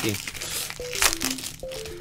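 Foil wrapper of a Pokémon trading card booster pack crinkling and tearing as it is opened by hand, loudest about a second in. Background music plays a short falling run of notes that repeats.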